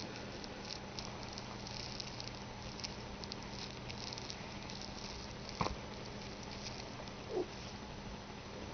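Faint rustling and light scratching of a kitten pawing at small toys on a fleece blanket, over a low steady hum. One sharp click comes a little past halfway, and a brief short sound near the end.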